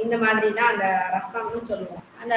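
Speech only: a woman lecturing.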